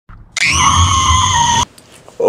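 A loud, high-pitched scream, held for just over a second with its pitch sinking slightly, then cut off abruptly.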